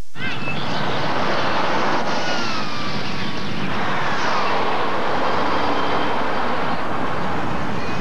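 City street traffic: cars driving past over a steady rumble, their engine tone falling in pitch as each one goes by, twice in the middle of the stretch.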